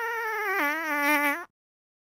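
A single high-pitched, squeaky fart sound lasting about a second and a half. Its pitch drops about half a second in and then wavers.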